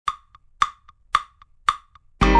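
Woodblock struck four times at an even beat, about half a second apart, with a faint softer tick after each stroke. It plays alone as the track's percussion intro.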